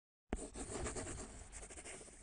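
Pen scratching quickly across paper, a drawing sound effect that starts with a sharp click and runs as a rapid series of scratchy strokes.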